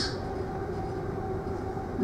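Steady low rumble of the ferry Ulysses's engines and machinery heard from inside the ship as it pulls away from the berth, with a faint steady hum over it.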